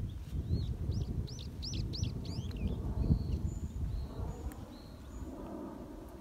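A small bird singing: a quick run of about seven high chirps that rise and fall, then a few short high whistles. A low rumble runs underneath.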